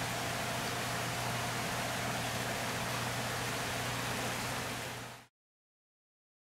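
Steady hiss with a low steady hum underneath, fading out a little after five seconds into silence.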